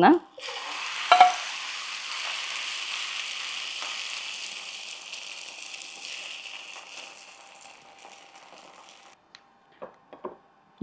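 Egg and okra omelette batter sizzling as it is poured into a hot, oiled nonstick pan and spread with a spoon. The sizzle is strongest in the first few seconds and then fades steadily, with a short knock about a second in.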